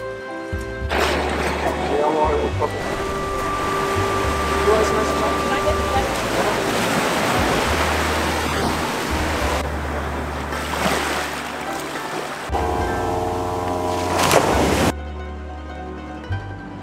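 Ocean waves washing against a rocky shore, a loud steady rush of surf that starts about a second in and cuts off abruptly near the end, over background music with a steady bass line.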